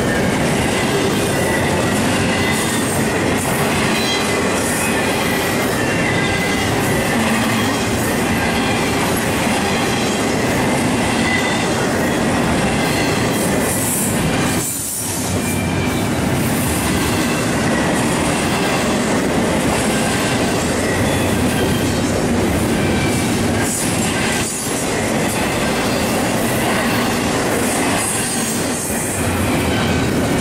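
Double-stack intermodal well cars rolling steadily past: continuous steel wheel-on-rail noise with a faint high squeal from the wheels. The noise dips briefly twice, about halfway through and again near three-quarters.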